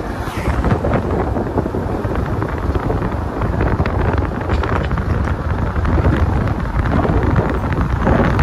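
Wind rushing over the microphone from a moving car, with steady road and engine noise underneath.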